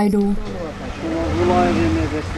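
A motor vehicle's engine running on a street. Its hum comes up about a second in, over a low rumble, rising and then easing in pitch.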